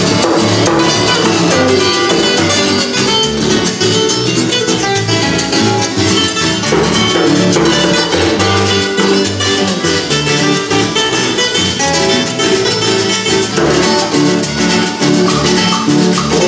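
A live carranga band playing: strummed acoustic guitar, electric bass and a plucked banjo-like string instrument over hand percussion, at a steady dance rhythm.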